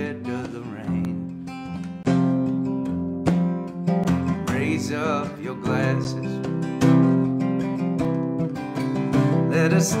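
Acoustic guitar strummed in steady chords, with a man's singing voice coming in over it in places.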